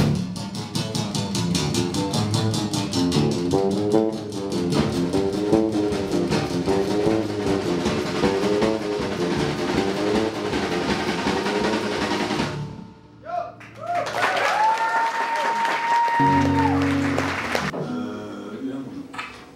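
Live band music: an acoustic-electric guitar plays a fast, repeating picked pattern over a drum kit. About two-thirds of the way through, the music breaks off briefly. A different passage follows, with a long held note that bends up and down, then low held notes near the end.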